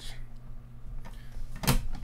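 Hard plastic graded-card slabs knocking together as a stack of them is picked up and handled. There are a few light clicks and one sharp clack near the end, over a low steady hum.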